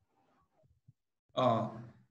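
Near silence, then about one and a half seconds in a man's brief voiced sound, a short vocal hesitation of about half a second just before speaking.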